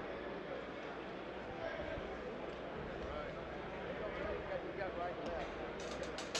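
Indistinct murmur of many people talking quietly in a large room, no single voice standing out.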